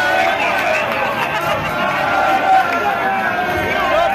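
A crowd of fans talking over one another: a steady babble of many voices with no single voice standing out.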